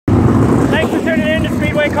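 Mini sprint car engines running on the dirt track, a steady low rumble under a man talking close to the microphone.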